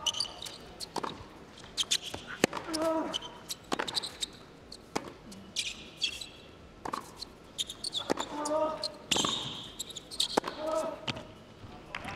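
Tennis rally on a hard court: a tennis ball is struck back and forth with rackets, each hit a sharp crack about every second, some of them with a player's short grunt. Thin high squeaks of tennis shoes on the court come between the hits.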